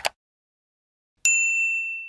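Subscribe-button sound effects: a quick double click right at the start, then, about a second later, a single bright notification bell ding that rings out and fades.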